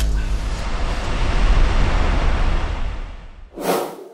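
A loud, noisy rumble with a heavy low end that fades away over about three seconds, then a short, sharp burst of noise near the end.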